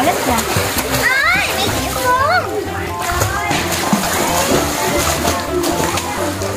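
Pool water splashing and sloshing as a small child in a life jacket kicks and paddles through it.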